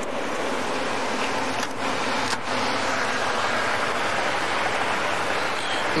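Steady rushing noise of highway traffic passing close by, swelling a little through the middle, with a couple of faint clicks about two seconds in.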